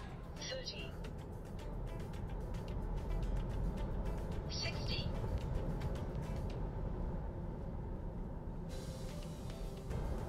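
Low road and tyre rumble inside the cabin of a 2022 Tesla Model 3 Long Range under full acceleration in chill mode, building slightly over the first few seconds as speed climbs from about 30 to past 60 mph.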